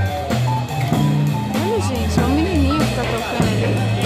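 A small live band playing at a sidewalk café: steady bass notes and drums under guitar, with a wavering melody line in the middle.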